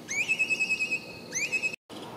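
Two high, clear whistled calls, each rising quickly and then held steady with a slight warble. The second call is cut off abruptly shortly before the end.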